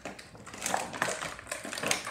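Hands handling small toy pieces on a table: a string of short, irregular taps and rustles, loudest about a second in and near the end.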